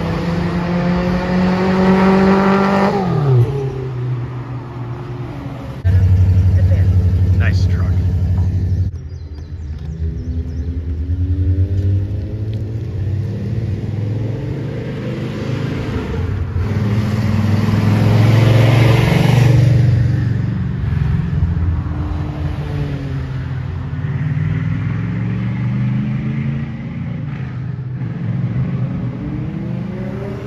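Race cars accelerating down a track straight and passing by, engines revving up through the gears, the pitch climbing and then dropping at each shift. A loud, steady low engine drone comes in suddenly about six seconds in and cuts off about three seconds later, and the loudest pass swells up around eighteen to twenty seconds in.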